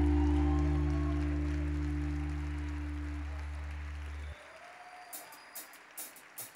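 A band's final chord on electric guitar and bass ringing out and slowly fading, then cut off abruptly about four seconds in, with audience applause underneath.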